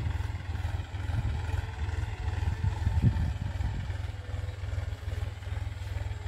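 Farm tractor's diesel engine running steadily as it pulls a tiller between crop rows, heard from behind as it moves away: a low, even drone.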